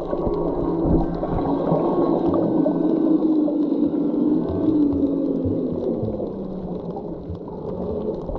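Muffled underwater sound: a low, steady hum that slowly falls in pitch over several seconds, with light scattered crackling.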